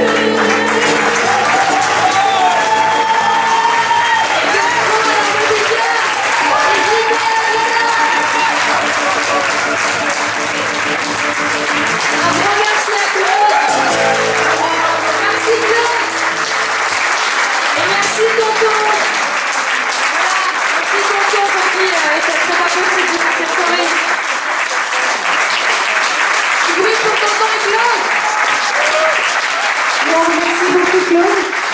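Acoustic guitar and harmonica playing the closing chords of a live French chanson under loud audience applause and cheering. About 18 seconds in, the music stops and the applause and shouting voices carry on.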